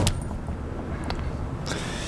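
A sharp click, then clothing rustling close to the microphone over a low steady rumble, with a smaller click about a second in.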